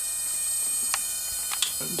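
Steady hissing buzz from a flyback transformer's spark gap firing continuously. Two short clicks come about halfway and again about a second and a half in.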